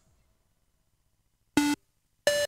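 Near silence as the previous techno track's tail dies away, then one short synthesizer beep, a buzzy tone with many overtones, about a second and a half in.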